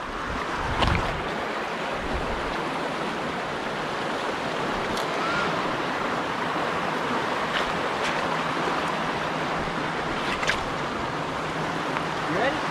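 Shallow rocky creek rushing steadily over stones, with a few faint clicks from footsteps on the rocks.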